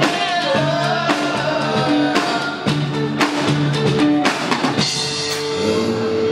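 Live band playing rock: drum kit hitting a steady beat over bass and electric guitar, with a male voice singing a bending melody in the first seconds. About five seconds in, a single held note comes in and sustains.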